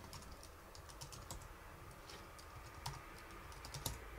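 Faint typing on a computer keyboard: a quick, uneven run of light key clicks as a short command is typed.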